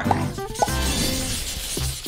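Background music with a shattering sound effect, like breaking glass or ice, fading away.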